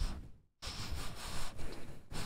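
Cloth rustling close to the microphone as a hoodie is pulled up over the head, dropping out briefly about half a second in.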